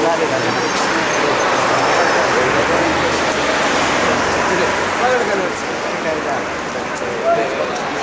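Many people talking at once: a steady babble of overlapping voices, with no single speaker standing out.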